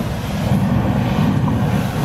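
Hairspray sprayed through a lighter flame as an improvised aerosol flamethrower: a steady rushing noise of the burning spray jet.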